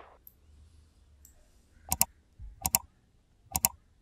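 Computer mouse clicks: three quick pairs of sharp clicks, each a press and release, in the second half. A couple of faint ticks come before them.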